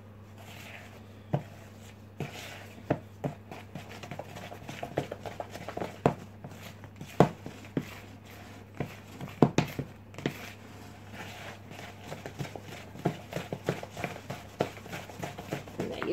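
Wooden spoon beating and scraping thick cake batter in a plastic mixing bowl: irregular knocks and taps of the spoon against the bowl, with soft wet scraping between.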